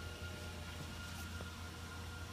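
Steady low electrical hum with a thin, faint, steady high whine over a soft hiss: the background hum of powered shop equipment, with the robot arm not yet moving.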